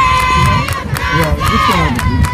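Women's voices shouting together in a loud, high-pitched rallying cry, in two surges, the second about a second and a half in. A steady beat of clapping or drumming runs underneath.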